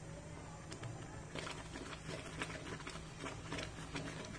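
Thick cracked-wheat porridge boiling in a pot, its bubbles popping in faint, irregular clicks that grow busier about a second and a half in.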